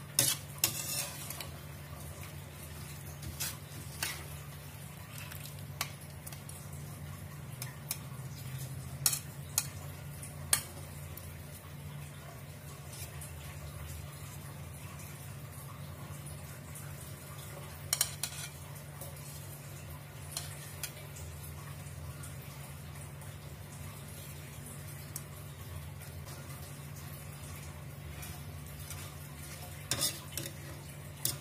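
A slotted metal spatula scraping and knocking against a wok as stir-fried shrimp is scooped out onto a plate. The sharp, scattered clinks are loudest near the start, around 9 to 10 seconds in and around 18 seconds in, over a steady low hum.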